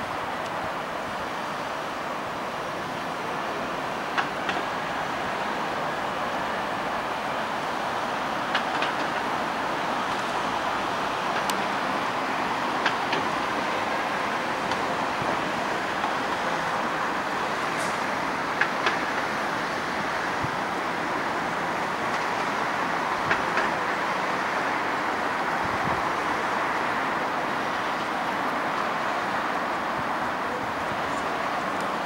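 Steady outdoor city traffic noise, with a few faint short clicks.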